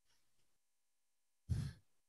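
Near silence, then about one and a half seconds in a single short breath out, a sigh, close to a call participant's microphone.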